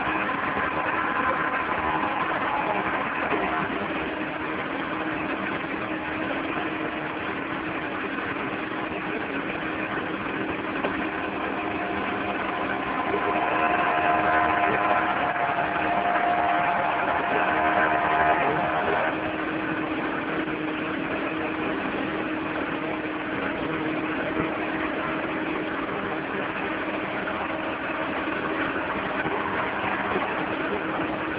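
An engine running steadily, its sound swelling with a higher, louder tone for several seconds around the middle before settling back.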